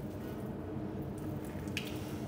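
Quiet, steady room tone with a faint hum, and a small click near the end.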